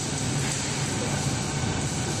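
Semi-automatic aluminium foil rewinding machine running with a steady mechanical hum.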